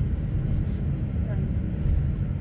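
Steady low rumble of engine and road noise heard from inside a moving bus.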